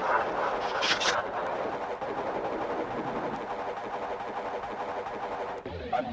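Ambient electro track: a steady, noisy wash of sound with faint held tones underneath. A bright hiss stops about a second in, and the sound dips briefly and changes just before the end.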